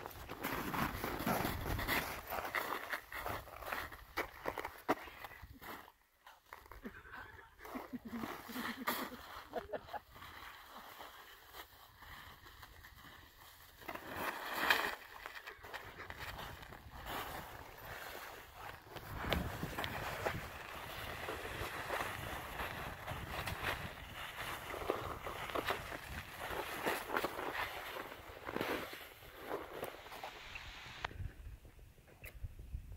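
Footsteps crunching on snow with the rustle of clothing and backpacks, irregular and uneven, dipping quieter for a few seconds partway through.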